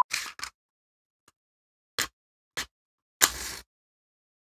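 A match struck against the striking strip of a Swan matchbox: two short scratches about half a second apart, then a louder, longer strike near the end. The match fails to light because its head sticks to the box.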